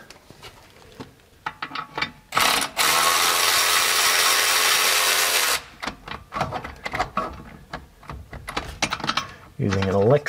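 Cordless electric ratchet running steadily for about three seconds, starting a couple of seconds in, as it spins out a loosened brake caliper bracket bolt. Light clicks and knocks of the tool on the bolt follow.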